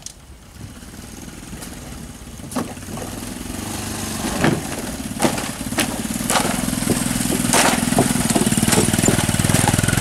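Small motorcycle's engine running at low speed, growing steadily louder as it approaches. Loose wooden bridge planks knock and clatter under its wheels, a dozen or so sharp knocks in the second half, as it rides over the rotten, broken deck.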